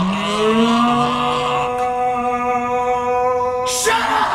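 Men screaming in one long drawn-out yell. Two voices start together, rising in pitch, and one drops out about halfway through. The other holds a single steady pitch for over three seconds and breaks off near the end in a short harsh burst.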